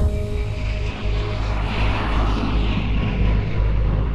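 Airplane engine noise: a steady low rumble with a rushing sound that swells in the middle, under background music.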